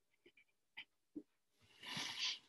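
Near silence: a few faint ticks of a pencil on paper as a digit is written, then a short soft hiss near the end.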